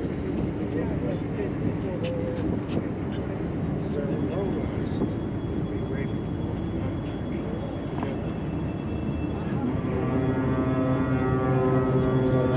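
Indistinct voices nearby, then about ten seconds in a cruise ship's horn begins a deep, steady blast that is still sounding at the end. The blast is part of a horn salute between two passing cruise ships.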